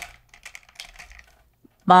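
Irregular light clicks and taps of small plastic makeup packaging being handled and picked up, a stick-balm tube among them.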